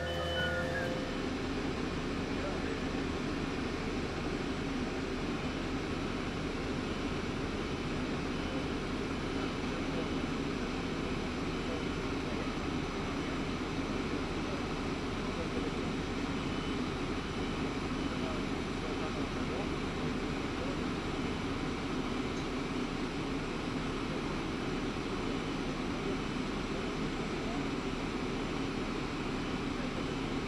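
A heavy truck's engine running steadily, an even drone that does not change.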